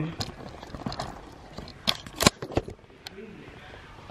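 Christmas decorations and a plastic storage bin being handled: scattered clicks and light knocks of plastic, with two sharper knocks close together about two seconds in.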